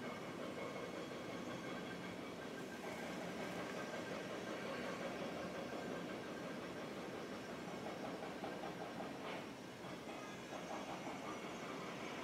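Steady background hum and hiss with a few faint high steady tones running under it; no speech.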